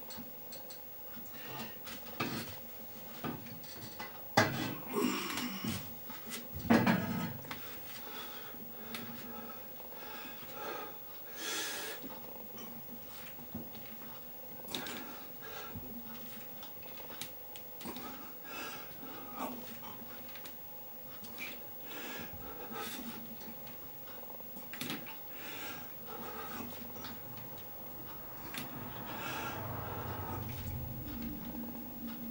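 Cast-iron weight plates on a loaded barbell clinking and knocking during a set of back squats, with louder knocks about four and seven seconds in.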